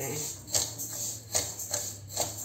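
Flat metal spatula scraping a metal kadhai while stirring dry split moong dal and rice as they roast, the grains rattling and sliding against the pan in a few separate strokes.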